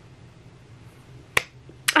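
A single sharp click about one and a half seconds in, over faint room tone.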